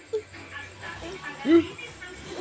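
A toddler's voice: short wordless vocal sounds, the loudest a brief rising-and-falling cry about halfway through.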